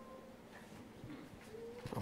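Quiet room tone with a faint, brief pitched sound at the start and another near the end.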